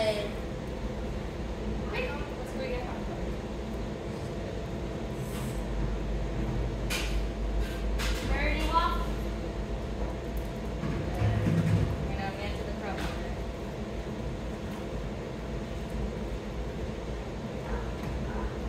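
Steady low hum of room noise, with faint voices talking briefly now and then and a few light knocks.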